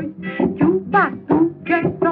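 Music from a 1929 shellac disc: acoustic guitars (violões) playing a quick, strongly accented batuque dance rhythm between sung verses.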